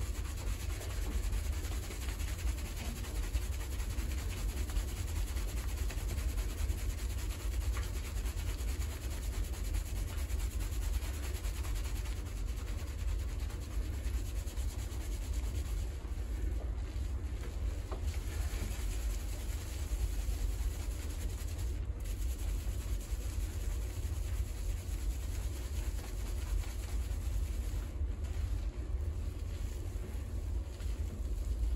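Fingers scrubbing a shampoo-lathered scalp: continuous wet rubbing of hands through foamy hair, over a steady low rumble.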